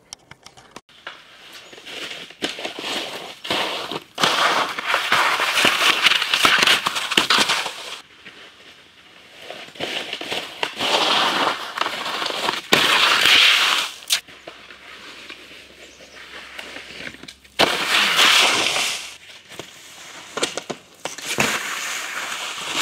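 Skis sliding and scraping over soft spring snow in several runs, each a loud hiss of a few seconds, with crackling clicks and knocks between them.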